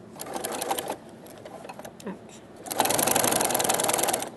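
Singer electric sewing machine stitching a denim jean hem: a short run of rapid, even stitches in the first second, then a longer, louder run beginning about two and a half seconds in.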